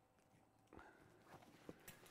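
Near silence, then from just under a second in, faint rustling and a few small ticks as a monogram-canvas duffel bag with leather handles is handled and lifted.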